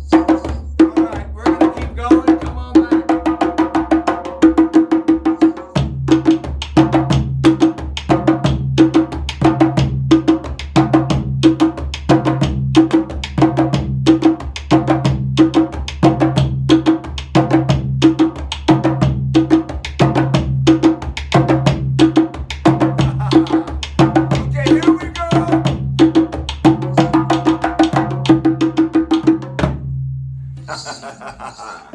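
Two djembes and a djun-djun struck with a stick playing an interlocking hand-drum rhythm at a steady pulse. A deeper drum tone joins about six seconds in, and the groove stops right at the end.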